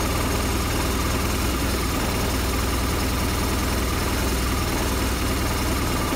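A 2008 BMW R1200RT's boxer-twin engine idling steadily while it warms up after a start.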